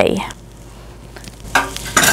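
Fork stirring a wet mix of beaten egg, barbecue sauce and ketchup in a bowl: a faint, steady soft scraping, with a brief louder noise near the end.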